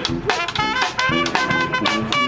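Street brass band playing live, a trumpet playing the lead line in short, separated notes over the other horns.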